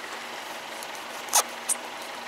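A car engine idling with a steady low hum. Two short crunches sound a little past the middle.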